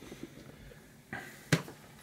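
Flower-pot saucers set down in a plastic storage tote: a light knock about a second in, then one sharp click half a second later.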